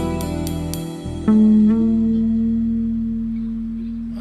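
Electric-guitar band ending a tune: four quick accented hits over a held chord, then about a second in a final guitar note rings out and slowly fades.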